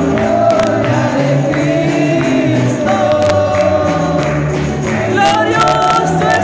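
A congregation singing a gospel hymn together, with instruments carrying a changing bass line underneath. Hand-clapping keeps the beat throughout.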